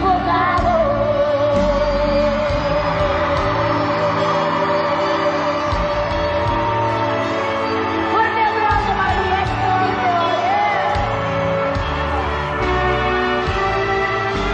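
Live Tejano band music with a female lead singer holding long, sliding notes over the band's steady accompaniment.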